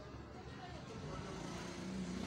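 Faint background hum with faint voices, no distinct event.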